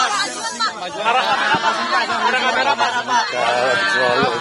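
Overlapping chatter of a crowded press scrum: several voices talking at once, none clear enough to make out.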